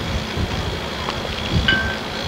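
Wind buffeting a camcorder microphone, with irregular low thumps and a brief high tone near the end.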